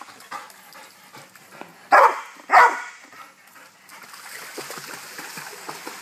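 Chocolate Labrador retriever barking twice in quick succession, about two seconds in.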